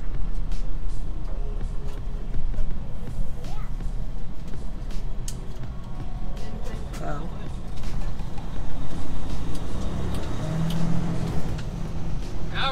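Freightliner Cascadia semi-truck's diesel engine running at low speed through a turn, heard inside the cab as a steady low drone. A louder hum comes in near the end.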